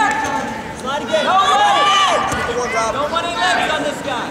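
Several people shouting at once, their voices overlapping, over general crowd noise.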